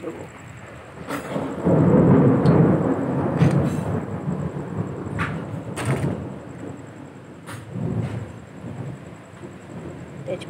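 Thunder rumbling in a storm: a low roll swells about two seconds in and rolls on for a couple of seconds before fading, with fainter rumbles later. A few sharp clicks sound over it.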